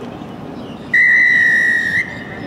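Referee's whistle: one long, steady blast starting about a second in and lasting about a second, blown to stop play.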